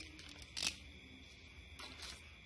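Faint handling of packaging while lures are wrapped for shipping: a few small clicks and one short rustle just over half a second in. A steady faint high tone sits behind it.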